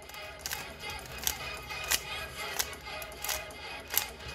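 A stickerless plastic 3x3 speed cube clicking as its layers are turned in quick succession during a solving algorithm: about eight sharp clicks, unevenly spaced, over faint background music.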